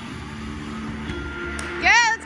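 Floor-routine music playing in a large gym, then near the end a sudden loud, high-pitched cheer.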